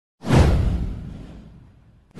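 A whoosh sound effect with a deep low end: one sudden sweep about a quarter second in that slides down in pitch and fades away over about a second and a half.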